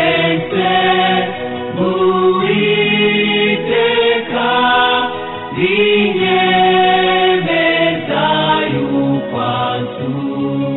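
Choir singing a gospel hymn in long held notes.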